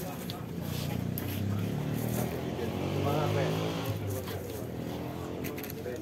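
A motor vehicle engine passing by, its pitch and loudness rising to a peak about three seconds in and then falling away, over a murmur of voices.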